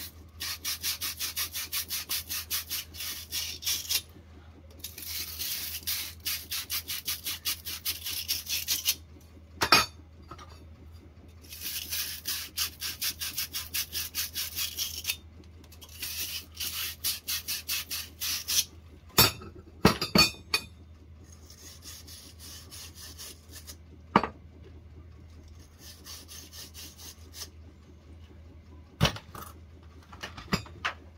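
Copper pipe ends scrubbed clean by hand with a small bristled cleaning brush, as prep before soldering. The strokes go rapidly back and forth in several runs of a few seconds each. A few sharp clinks of copper pipe and fittings come between the runs.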